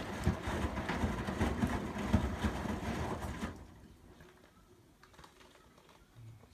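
Front-loading washing machine on a delicates cycle, its drum turning and sloshing the wet clothes with irregular soft knocks, then stopping about three and a half seconds in.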